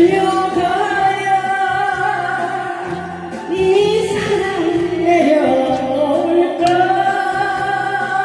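A woman singing a Korean trot song into a microphone over a karaoke backing track, holding long notes with a slight waver.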